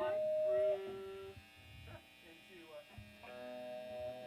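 Steady held tones ringing from an electric guitar amplifier: a higher tone cuts off under a second in, a lower one sounds briefly, and the higher tone returns near the end, with faint talk underneath.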